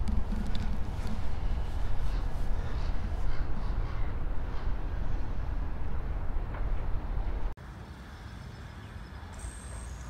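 Outdoor ambience: wind rumbling on the microphone, with birds calling. About three-quarters of the way through, the sound drops suddenly to a quieter background.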